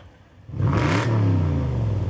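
Mercedes-Benz CL coupé's V8 with an aftermarket exhaust, revved hard once for an exhaust-noise check: about half a second in the engine note climbs quickly, peaks, then drops back and runs on loud and steady.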